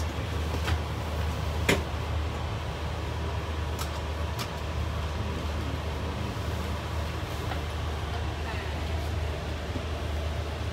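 Steady low engine rumble with a few sharp clicks in the first few seconds, the loudest a little under two seconds in.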